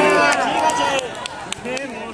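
Football spectators letting out a long, loud shout that rises and falls in pitch and ends about a second in, followed by quieter chatter.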